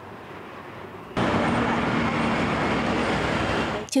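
City bus and road traffic running close by: faint street noise, then a loud, steady rush of engine and tyre noise with a low hum that starts abruptly about a second in.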